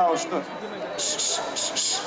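A man speaking over a public-address system to a large crowd, with crowd noise underneath. From about halfway in, a rapid run of short hissing sounds follows, about five a second.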